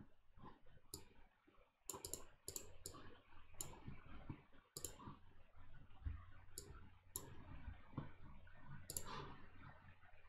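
Faint computer mouse clicks, about ten sharp clicks spread irregularly over several seconds, with soft handling noise in between.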